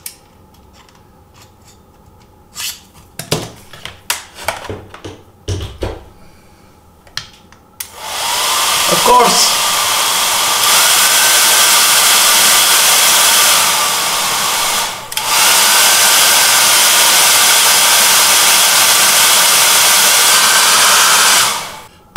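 Small clicks and scrapes of a screwdriver poked through a Philips hair dryer's front grille, then about eight seconds in the dryer starts and runs loudly and steadily with a motor whine that rises in pitch: it is running again once its tripped thermal cutout has been nudged back closed. It drops out briefly about fifteen seconds in, comes back, and stops near the end.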